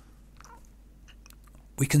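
Faint mouth clicks and lip smacks in a pause between sentences, then a man starts speaking again near the end.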